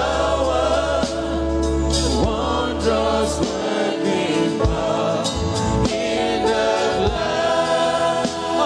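Gospel choir singing with instrumental backing under a sustained, shifting bass line.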